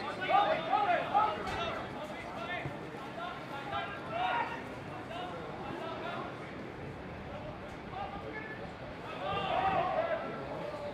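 Men's voices calling and shouting across a football pitch during play, over steady outdoor background noise; the calls are loudest in the first second and again near the end.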